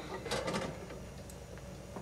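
A few quick clicks and rattles about half a second in, as a light's plug is pushed into its socket, over a faint steady low hum.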